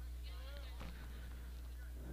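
Faint ballpark background: a steady low hum, with a distant voice briefly heard about half a second in.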